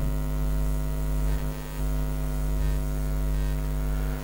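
Steady low electrical mains hum, an unchanging buzz that sits under the whole recording.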